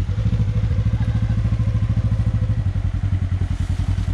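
Polaris side-by-side UTV engine idling steadily, with a fast, even low pulse.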